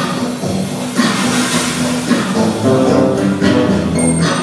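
Live band music with an acoustic guitar and a drum kit, pitched notes held over a steady beat, with cymbals washing louder about a second in.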